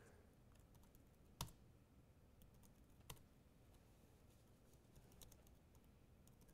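Faint, scattered keystrokes on a computer keyboard over near-silent room tone, with a sharper key click about a second and a half in and another about three seconds in.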